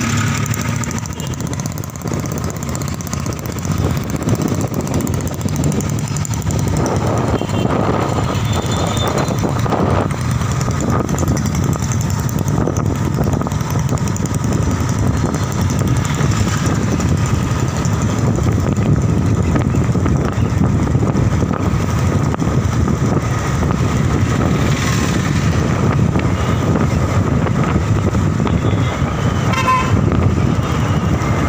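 Steady engine and road noise of a motorbike, heard while riding along an open road.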